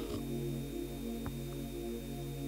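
Soft sustained keyboard chords played under the preaching, with a steady electrical hum and a thin high whine. Two faint knocks, one right at the start and one just after a second in.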